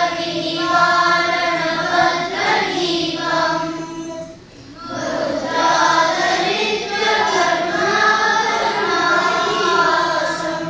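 A group of children chanting Sanskrit slokas in unison, with a short break about four and a half seconds in.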